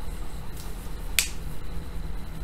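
A single sharp click about a second in, over a low steady hum.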